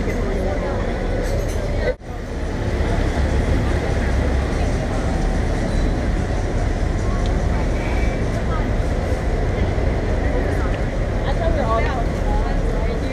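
Crowd chatter on a busy pedestrian street for the first two seconds, then a cut to steady road traffic: a continuous low rumble of car and bus engines and tyres.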